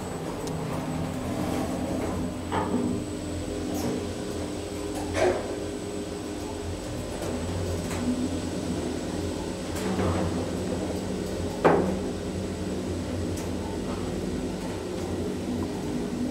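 Inside a Schindler Eurolift traction elevator car: a steady hum from the car and its equipment, broken by a few short knocks.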